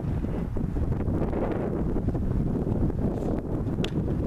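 Wind buffeting the camera microphone: a steady low rumble. A single sharp click comes just before the end.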